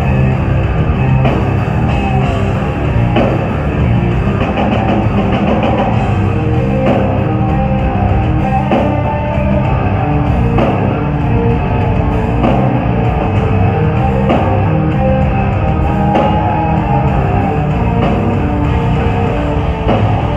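Live heavy metal band playing loud and without a break: distorted electric guitars over a pounding drum kit, with no singing.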